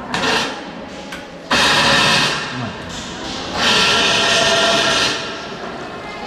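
Power wheelchair's electric drive motors running in bursts under joystick control as the bare chassis drives and turns: a short burst at the start, then two longer runs of about one and one and a half seconds, each a steady motor whine. This is a test drive of the chassis after servicing.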